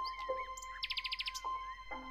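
Birds chirping, with a quick high trill of about eight notes in the middle, over soft background music with steady sustained tones.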